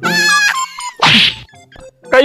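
Comic sound effects laid over the skit: a held, buzzy pitched tone, then a short noisy hit about a second in.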